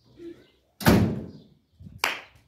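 Steel hood of a Peugeot 405 sedan slammed shut once, a single loud bang that dies away within about half a second.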